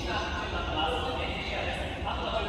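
Horse-race commentary relayed over outdoor public-address loudspeakers during the run to the finish, the voice echoing and blurred by distance.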